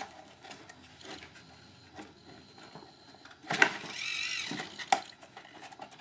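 A small electric motor whirs briefly at a high pitch, about three and a half seconds in, for about a second, amid light clicks and knocks of hard plastic parts being handled.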